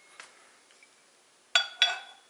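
Two sharp clacks with a short metallic ring, about a quarter second apart near the end, as a bike crank arm with its spindle is set down on top of the other crank arm on a digital scale. A faint tick comes shortly before.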